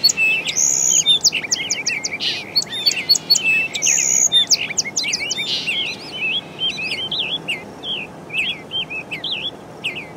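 Birds chirping and calling in quick, overlapping bursts, with a steady low hiss of background noise underneath.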